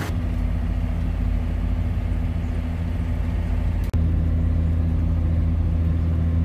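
John Deere 7520 tractor's diesel engine idling steadily with a low hum while it warms up on a cold morning. About four seconds in, after a brief dropout, the engine hum carries on slightly louder and steadier as the tractor drives along, heard from inside the cab.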